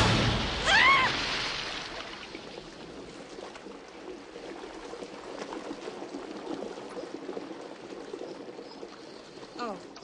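A large object splashes down into a swimming pool with a loud crash of water, followed about a second in by a short high cry, then water churning and sloshing as the pool settles, fading over several seconds.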